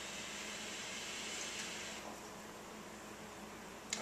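A hookah being drawn on: air pulled through the hose and water base gives a soft, steady hiss that ends about two seconds in, leaving faint room noise.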